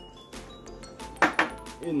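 Two sharp clicks in quick succession a little past the middle as a mesh hop bag of pellet hops is handled over the brew kettle, over quiet background music.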